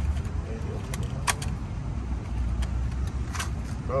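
A small plastic pack of licence-plate bolts being handled, the metal hardware inside clinking in a few short, sharp clicks over a low rumble.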